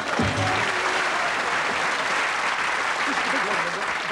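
Studio audience laughing and applauding at the end of a comedy sketch: a steady wash of clapping.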